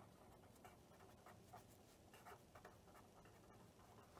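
Faint scratching of a pen writing a word on paper on a clipboard, in a few short strokes.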